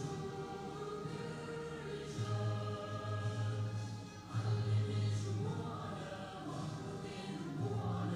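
Choir singing an anthem over sustained low notes, the sound dipping briefly about four seconds in before swelling again.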